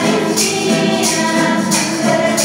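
Church choir singing, with a tambourine shaken on a steady beat about every two-thirds of a second.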